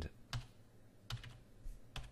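Computer keyboard keys pressed one at a time: about four separate keystrokes, spaced unevenly, as text is typed in.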